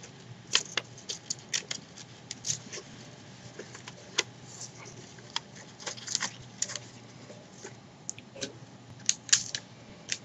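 Paper and sticky tape being handled close to the microphone: irregular crinkles and sharp clicks, with a few louder ones spread through, as tape is put onto the folded paper.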